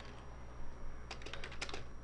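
Typing on a computer keyboard: a quick run of key clicks, mostly in the second half.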